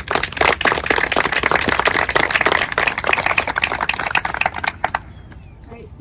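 Audience applauding with many people clapping at once. The applause stops about five seconds in.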